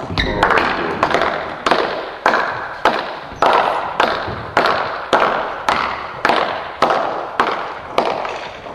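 A steady series of sharp knocks, a little under two a second, each trailing off in a short echo in a large room.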